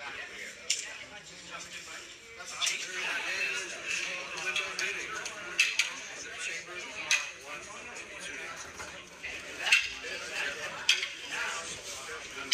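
Wooden escrima sticks clacking together in sharp, irregular strikes, about eight or nine through the stretch, the loudest about ten seconds in, over a background murmur of voices in a large room.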